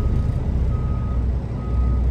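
Semi truck's backup alarm beeping while the truck reverses: one steady tone, about one beep a second, over the constant low rumble of its diesel engine.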